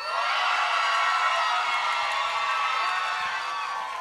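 Theatre audience cheering and whooping, many voices at once, starting abruptly and easing slightly near the end.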